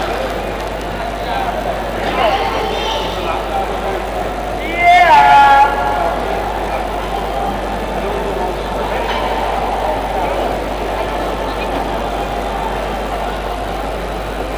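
Indoor arena crowd chatter, a steady murmur of voices, with one loud call falling in pitch about five seconds in.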